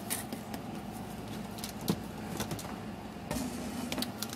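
Small plastic toy shopping baskets being picked up and handled: scattered light clicks and taps, with one sharper click about two seconds in.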